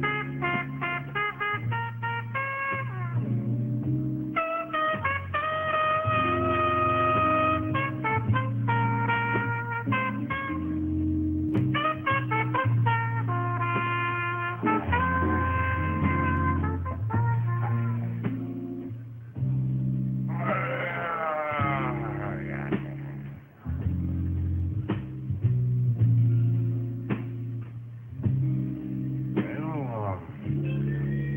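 Instrumental jazz: a horn plays melodic phrases over a bass line and rhythm accompaniment, with a fast wavering passage about twenty seconds in.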